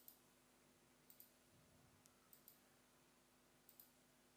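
Faint computer mouse clicks, in quick pairs about four times, over quiet room tone.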